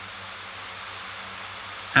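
Steady room hiss with a faint low hum in a pause of speech; a man's voice starts again at the very end.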